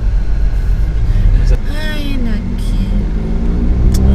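Steady low rumble of a car and street traffic heard from inside the car's cabin, with a brief voice sound about two seconds in.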